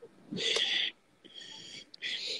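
Two breathy, wheezing bursts of a person's laughter, the first louder and the second shorter and fainter.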